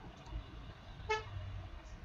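Faint background noise with one short pitched toot about a second in.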